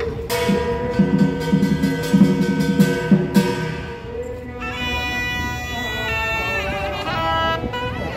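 Chinese Taoist ritual music: a loud double-reed horn (suona) plays a held, wavering melody. Sharp percussion strikes sound through the first half.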